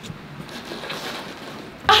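Steady background noise, an even hiss with no distinct sounds in it, and a woman's voice starting near the end.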